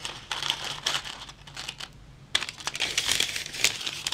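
Baking paper crinkling and rustling as it is pressed around the inside of a perforated metal tart ring, with a brief lull about halfway through.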